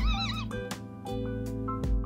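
Male budgerigar mimicking speech, a short warbled 'kōen' ('park') that ends about half a second in, over background music with a steady beat.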